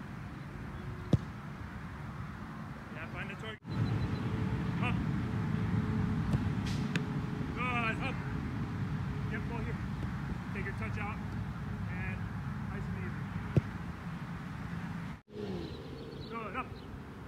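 A soccer ball struck hard twice, a sharp thud about a second in and another near the end, over a steady low outdoor rumble.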